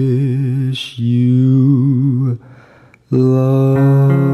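A singer holds the last long notes of a slow jazz ballad with wide vibrato, taking a breath between them. The song ends about two and a half seconds in, and after a brief pause the next track's instrumental accompaniment begins.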